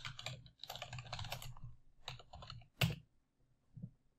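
Typing on a computer keyboard: a quick run of keystrokes, then one louder single keystroke about three seconds in, and a faint click just before the end.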